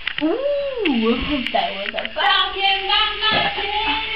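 A person's voice singing or vocalising without words: a swooping rise and fall in pitch, then a long held note in the second half.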